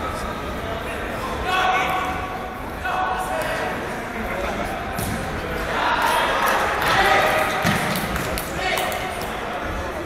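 Voices calling out several times during a football match, echoing in a large indoor hall, with a couple of sharp thuds of the ball being kicked.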